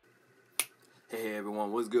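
A single sharp click about half a second in, then a man's voice starts speaking.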